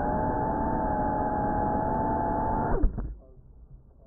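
GEPRC Cinelog 35 cinewhoop FPV drone's motors and propellers whining steadily, heard through the drone's own onboard camera. Just under three seconds in, the pitch drops sharply as the motors spool down, with a thump as the drone touches down.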